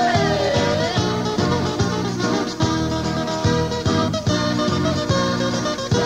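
Instrumental passage of a tammurriata, a southern Italian dialect folk song: plucked strings strum a regular rhythm under sustained chords, and a melody line sliding in pitch ends about a second in.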